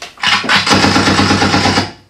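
Gunfire sound effect played from the V8 sound card's "Gun" pad: a rapid burst of automatic fire, about ten shots a second, starting a quarter second in and lasting about a second and a half.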